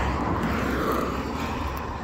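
A vehicle going by on a rural highway, its tyre and engine noise a steady rush that slowly fades as it moves away.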